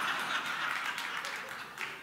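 An audience laughing and applauding after a punchline, easing off near the end.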